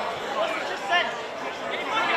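Players on a football pitch shouting short calls to one another at a distance, over a low murmur of other voices.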